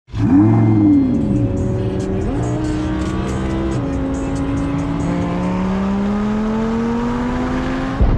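A sports car engine revs once, its pitch rising and falling, then pulls through the gears: the pitch drops at a shift a little before four seconds in and then climbs steadily.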